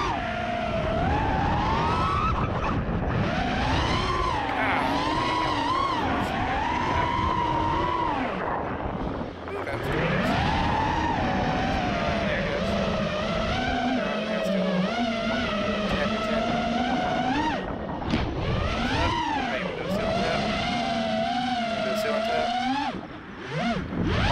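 Racing-quad brushless motors and propellers whining in flight, the pitch rising and falling with the throttle, over a low wind rumble. The whine dips briefly about nine seconds in and again just before the end.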